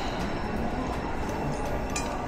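Steady background din of a busy food court: an even, continuous rumble and hiss of the hall with no close voice.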